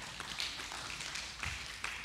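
A few soft taps and a dull thump, spaced irregularly: footsteps on a stage floor during a pause in speaking.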